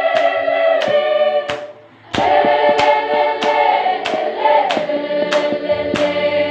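A group of women singing together unaccompanied, with sharp claps keeping a steady beat about every 0.6 seconds. The singing breaks off briefly about two seconds in, then resumes.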